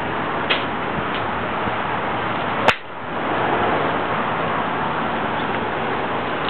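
Steady outdoor background noise with a couple of faint ticks, broken a little before halfway by one sharp click, after which the level drops briefly and then recovers.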